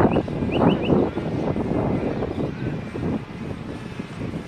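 Wind rumbling and buffeting on the microphone, with a bird's quick series of short, high chirps in the first second.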